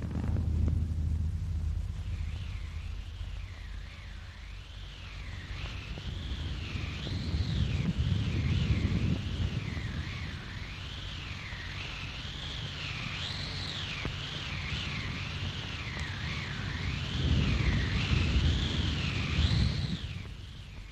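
Old film soundtrack effect: a high, thin wailing tone that glides smoothly up and down about once a second, over a deep rumble that swells about eight seconds in and again near the end.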